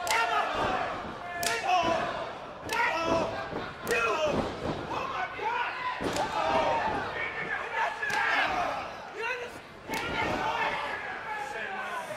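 A leather belt lashed across a wrestler's bare back: about seven sharp cracks, roughly one every one and a half to two seconds. Crowd shouts and yells run between the strikes.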